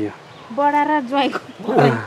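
A person's voice making a drawn-out wordless sound held at one pitch for about a second, then a shorter vocal sound near the end.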